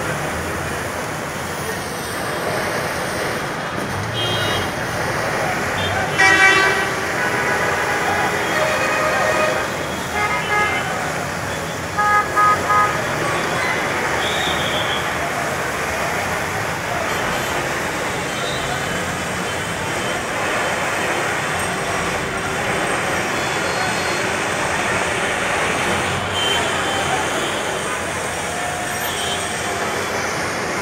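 Busy city road traffic with vehicles honking: several horn blasts in the first half, the loudest about six seconds in and three short toots around twelve seconds, over a steady wash of engine and road noise and voices.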